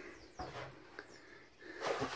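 A man's breath and a sniff close to the microphone, with a small click about a second in and faint bird chirps in the background.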